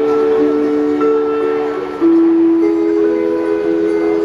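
Instrumental passage of a live song: acoustic guitar with long, steady held notes that change pitch every second or two, with no singing.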